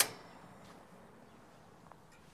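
A single sharp metallic click with a brief ring, from the gas grill's burner controls and ignition as the burners are turned on and lit.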